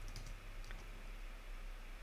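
Faint clicks of a computer keyboard as a short terminal command is finished and entered.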